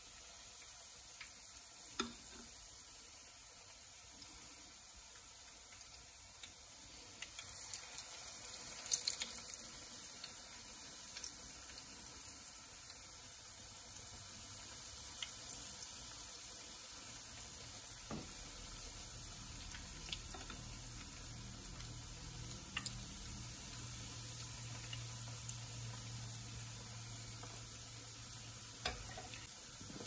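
Zucchini fritter batter frying in shallow hot oil in a frying pan: a steady sizzle that grows louder about a quarter of the way in as more spoonfuls go into the pan. There are a few light clicks of a metal spoon against the pan, and a low hum joins past halfway.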